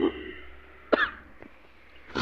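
A person's single short cough about a second in, between spoken phrases, over low steady room noise.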